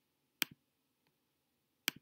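Two computer mouse clicks about a second and a half apart, each a quick double tick of button press and release.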